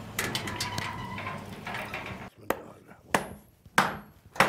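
Firewood being handled at a blacksmith's forge: a scuffling, rustling stretch, then three sharp knocks of wood, about two-thirds of a second apart.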